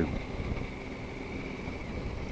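Triumph Tiger 800 XRx's three-cylinder engine running at low road speed, a steady low rumble, with wind noise on the microphone.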